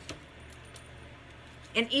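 A brief metallic clink of stacked metal bangle bracelets as the arms move, followed by a quiet stretch, then a woman starts speaking near the end.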